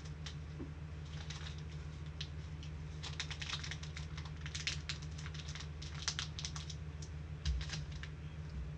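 Computer keyboard typing in irregular runs of clicks, sparse at first and busiest in the second half, over a steady low electrical hum. A thump sounds near the end.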